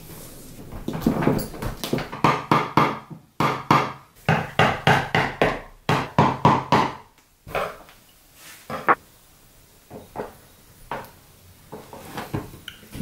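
A screwdriver tapping around the edge of a set plaster mould: a fast run of sharp knocks, about four a second, then scattered single taps after about seven seconds. The tapping works the flat mould loose so it can be lifted without breaking.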